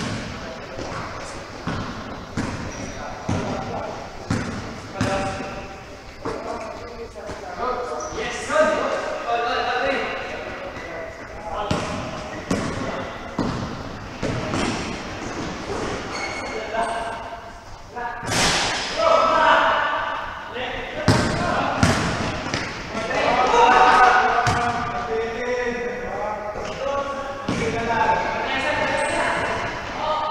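A basketball bouncing and thudding on an indoor court, with repeated sharp impacts, under indistinct shouts and calls from players echoing in a large gym hall.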